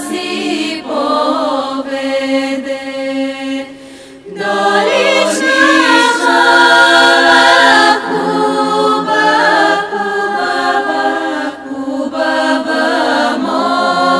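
Bulgarian women's folk choir singing a cappella, several voices in harmony over a steady held low drone note. The singing drops away briefly about four seconds in, then returns louder.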